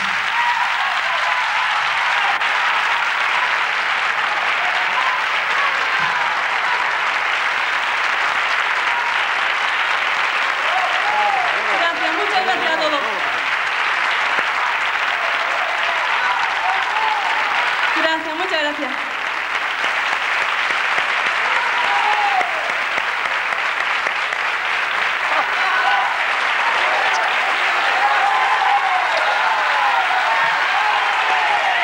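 Studio audience applauding steadily and at length after a song, with a few voices calling out from the crowd now and then.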